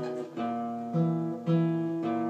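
Acoustic guitar strumming chords, with three strums about half a second apart and a change of chord between them.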